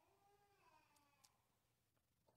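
Near silence: room tone, with a very faint pitched sound that bends up and down during the first second and a tiny click a little after the middle.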